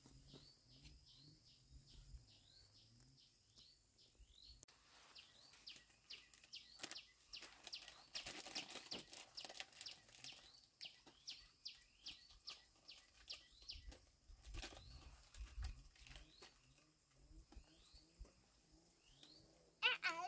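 Faint birdsong: short, high chirps sliding downward, repeating about twice a second, with a busier flurry around the middle.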